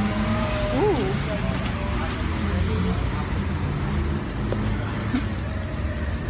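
Busy street ambience: indistinct voices of passers-by over a steady low rumble, with one voice rising and falling briefly about a second in.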